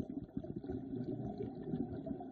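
Muffled low underwater rumble, as heard through a camera submerged in a swimming pool, with soft irregular knocks.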